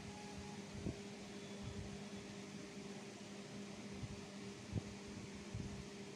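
Steady low hum of a fan in a small room, with faint scraping of a wax crayon tracing lines on paper and two soft knocks, about a second in and near five seconds.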